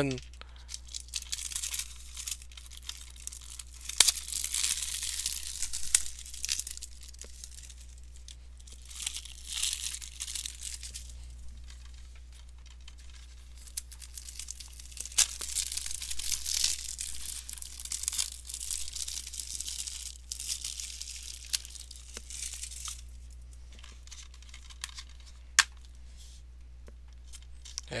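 Plastic shrink-wrap being picked at and peeled off a DVD case: intermittent crinkling and tearing, with a few sharp clicks, over a steady low hum.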